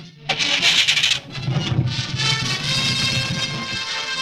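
Dramatic film background music: a short noisy burst about half a second in, then sustained held notes.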